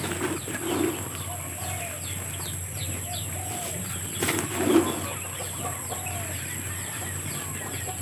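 Birds calling around a farmyard: many short, high chirps throughout, with lower clucking calls from chickens now and then. Under them, a plastic scoop scrapes and shakes through a sack of dry ground feed, with one sharp knock about four seconds in.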